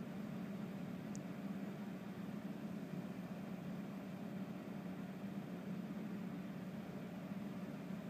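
A small cooling fan's steady low hum with a faint hiss, and one faint tick about a second in.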